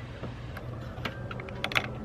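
Small socket ratchet clicking in short irregular runs as a nut on a car battery terminal is tightened down. The clicks start about half a second in and come thicker near the end.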